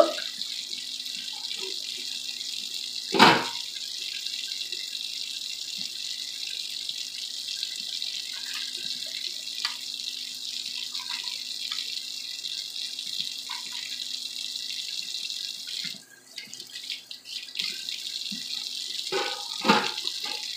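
Kitchen range hood fan running: a steady rushing hiss with a low motor hum under it. About three seconds in there is one loud knock, a few faint clicks follow, and the hiss briefly drops away about sixteen seconds in.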